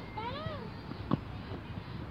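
A short meow-like call that rises and then falls in pitch, lasting about half a second, followed about a second in by a single sharp knock of a tennis ball being struck.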